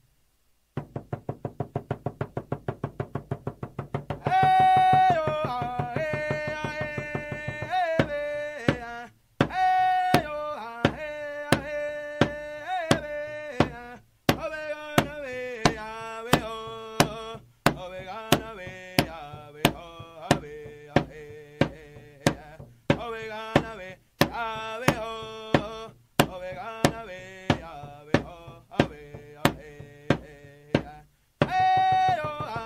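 Native American drum song: a drum beaten quickly and evenly, about five strikes a second, then about four seconds in a high voice begins singing long, bending notes over a steady, slower drumbeat of roughly one and a half strikes a second.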